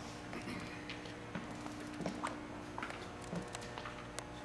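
Quiet indoor room tone: a steady low hum with a few faint ticks and taps scattered through it.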